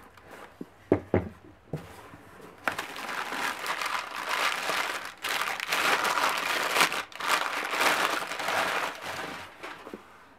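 Packing paper crumpled and rustled by hand while a rose quartz bowl is unwrapped from it. A few light knocks come in the first two seconds, then dense crinkling runs from about three seconds in until just before the end.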